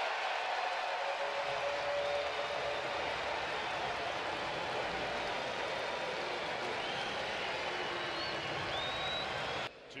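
Ballpark crowd cheering after a game-tying home run: a steady wall of many voices that cuts off suddenly near the end.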